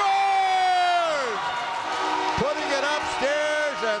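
A hockey play-by-play announcer's drawn-out shout of "Score!", held for over a second before its pitch drops away. A second long, held vocal call follows near the end.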